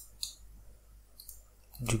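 Computer mouse buttons clicking: a few short, light clicks spread across two seconds as vertices are picked in the 3D modelling software.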